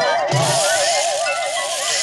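Cartoon sound effect for the wobbling spring-necked robot cat: an electronic tone wavering up and down about seven times a second, over a rattling hiss.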